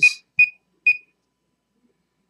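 Keypad beeps from a Prova 123 thermocouple calibrator as a value is keyed in: three short, high beeps about half a second apart in the first second.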